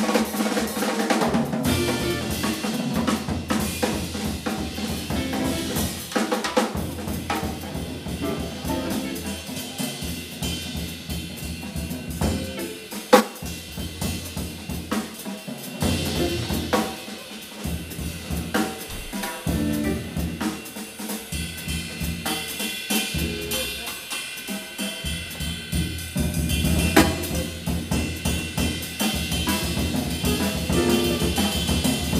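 Live jazz combo of electric guitars, double bass and drum kit playing, with the drums to the fore: snare, bass drum and cymbal strokes over a moving bass line, with a few sharp accented hits.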